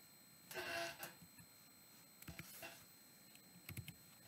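Near silence: room tone, with one soft, brief noise about half a second in and a few faint clicks later on.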